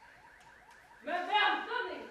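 A faint electronic alarm-like sound, a quickly repeating rising chirp, with a voice speaking over it from about a second in.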